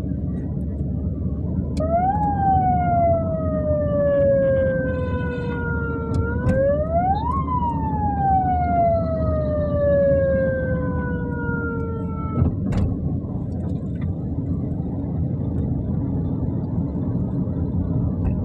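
A siren wailing in two long sweeps, each rising quickly and then falling slowly over several seconds, cutting off abruptly about twelve seconds in. Under it runs the steady low rumble of traffic and the moving vehicle.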